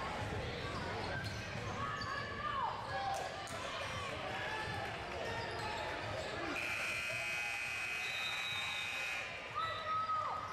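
Gymnasium scoreboard buzzer sounding steadily for about three seconds near the end, marking the end of the game, over voices shouting and a basketball bouncing on the hardwood court.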